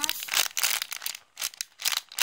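Clear plastic wrap crinkling as hands press and squeeze a wrapped homemade sponge squishy through it, a run of crackles with a short pause a little over a second in.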